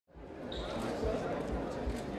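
Indistinct chatter of a crowd of guests in a large hall, with low thuds recurring about twice a second.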